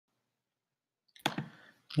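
Near silence for about a second, then two sharp clicks in quick succession, followed by a man's voice starting to speak at the very end.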